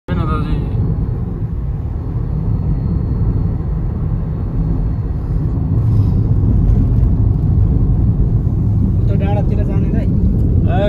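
Steady low rumble of a car's engine and tyres on the road, heard from inside the moving car's cabin. A voice speaks briefly near the start and again near the end.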